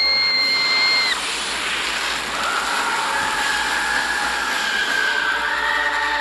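An animated girl's held, high-pitched scream cuts off about a second in. A steady rushing noise follows, with faint held tones coming in partway through.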